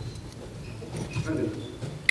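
Faint sports-hall background as players move through a handball drill: distant voices and scattered small sounds of movement on the court, with no loud single event.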